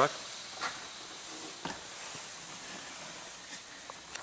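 Steady faint hiss of background room noise, with a few faint knocks.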